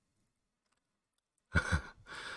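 Near silence, then about a second and a half in a man lets out a short, breathy laugh.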